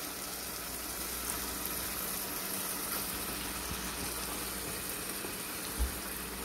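Oil and masala sizzling and bubbling steadily in a pressure cooker. A soft thump near the end as curd-marinated chicken drops into the hot oil.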